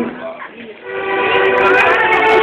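School string orchestra of violins and cellos: a held chord breaks off, there is a short lull, and sustained string chords resume about a second in.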